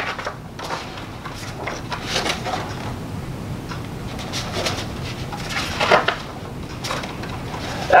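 A picture book's paper page flipped over with a quick rustle at the start, then scattered soft rustles and clicks as the book is held and handled, over a steady low hiss.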